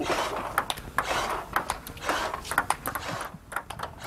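Table tennis balls clicking in quick succession, several a second, off the table and a bat as a ball-throwing robot set to its fastest level fires balls at a player.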